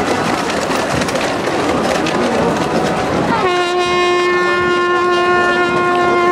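Crowd noise of a marching crowd, with sharp claps or clicks, then about halfway in a horn blown in one long, steady note that starts with a short upward slide.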